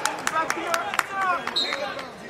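Coaches and spectators shouting over an arena crowd at a wrestling match, with scattered sharp knocks and a brief high squeak about one and a half seconds in.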